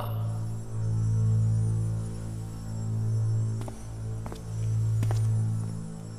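Low, steady droning hum that swells and fades every second or two, the ambient sound design of an animated magical scene. Three faint ticks come about halfway through.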